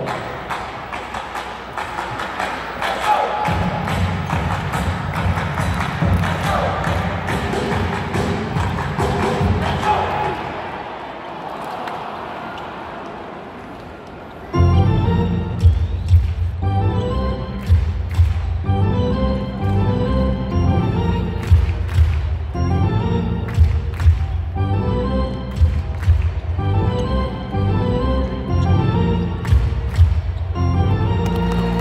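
Basketball arena crowd noise with music playing underneath, dying down; about halfway through, loud music with a heavy bass beat starts suddenly over the arena's PA.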